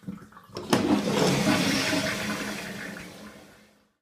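Japanese toilet flushed on the large (大) setting: a sharp click of the flush lever about 0.7 seconds in, then water rushing through the bowl, fading away near the end.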